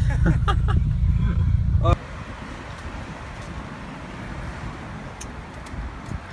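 Low road and engine drone inside a moving car's cabin, with faint voice or laughter over it. It cuts off abruptly about two seconds in and gives way to quieter, steady outdoor noise.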